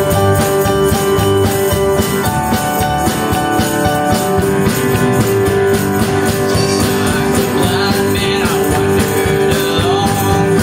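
A live band plays a country-gospel number with strummed acoustic guitars and bass over a steady tambourine beat, with no lead vocal for most of the passage.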